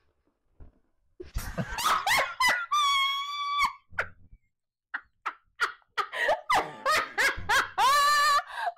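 A man and a woman laughing hard: after about a second of quiet, loud bursts of laughter with a long high-pitched squeal about three seconds in, then short, quick rhythmic laughs through the second half.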